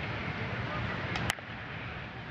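Ballpark crowd murmur with one sharp pop of the catcher's mitt about a second in, as a 91 mph pitch is caught.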